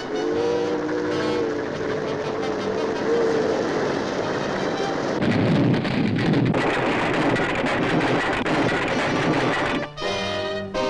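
Cartoon sound effect of an approaching steam train: a held whistle blast sounding several notes at once for about the first three and a half seconds, then the loud, noisy sound of the running train for the rest, loudest about five to six and a half seconds in.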